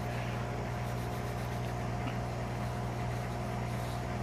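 Steady low electrical hum of background equipment with a fainter, higher steady tone above it, unchanging throughout.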